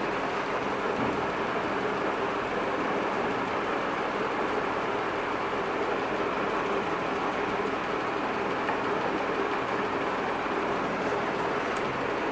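Steady, unbroken background noise: an even hiss with a faint low hum, as from a machine running in the room, with no distinct knocks or strokes standing out.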